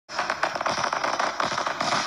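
Fireworks-style crackling sound effect: a dense, steady run of rapid small crackles.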